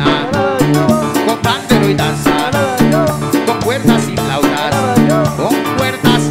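Live Latin band music from a Christian praise group: an instrumental passage with a repeating bass line, melodic lines and drums.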